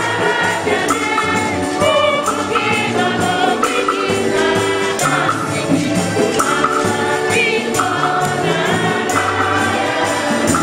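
A choir sings a lively gospel-style hymn in several voices, over a steady percussion beat with jingling accompaniment.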